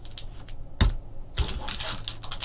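Hard plastic card holders and a cardboard box being handled on a table: a sharp clack a little under a second in, then a quick run of clicks and rustles.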